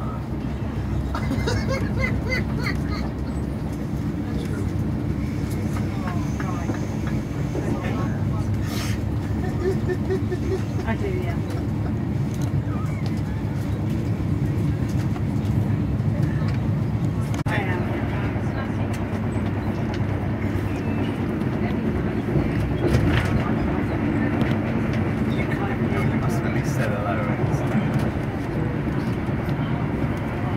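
Steady low rumble of a moving train heard from inside the carriage, wheels running on the track, with no pauses.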